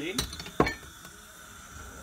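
Two short glassy clinks about half a second apart, the second the louder: a glass olive oil bottle being put down after pouring.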